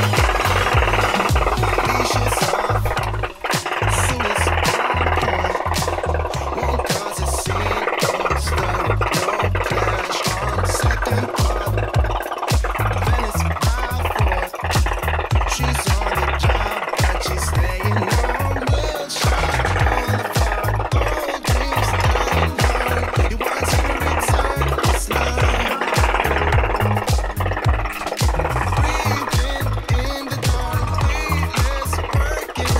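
An M249 gel blaster firing full-auto without pause, a continuous rapid rattle from its electric motor and gearbox as it empties a box magazine in one long sustained burst. Music with a steady beat plays under it.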